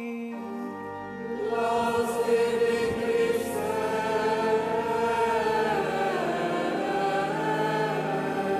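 A choir singing a sustained sung acclamation after the Gospel reading, coming in softly just after the start and swelling to full voice about a second and a half in, in the reverberant space of a large basilica.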